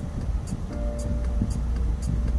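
Music playing on the car radio, held notes with a light beat about twice a second, over the low rumble of the Honda Civic's engine and tyres heard inside the cabin.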